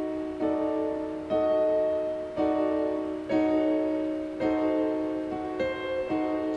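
Chords played on a digital piano keyboard, about six struck in turn roughly once a second, each held and fading. They are voicings and inversions of a D-sharp diminished seventh chord.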